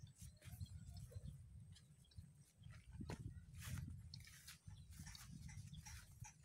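Faint low wind rumble on the microphone with irregular crackling rustles, typical of footsteps through grass.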